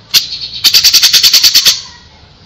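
Cucak jenggot (grey-cheeked bulbul) giving a harsh rattling call: one sharp note, then a fast run of about a dozen strokes lasting about a second.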